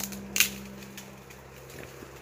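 Steady low hum of a giant honeybee colony on its open comb, with one sharp click about half a second in.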